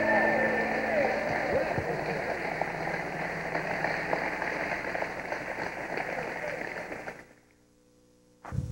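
Choir and audience applauding with scattered cheering voices, right after the last held note of a song dies away. The applause fades out about seven seconds in.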